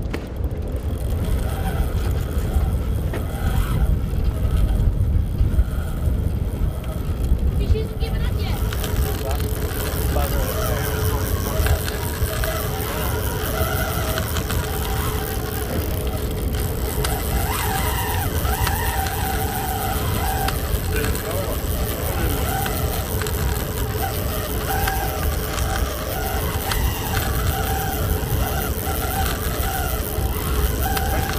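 Boat engine running at sea under heavy wind rumble, with a steady hum that comes in about eight seconds in, and faint voices.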